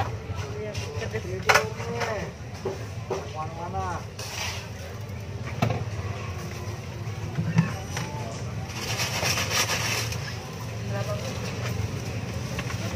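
Market-stall background: indistinct nearby voices talking, with a low motorcycle engine hum that fades early and comes back near the end, and a brief hiss about nine seconds in.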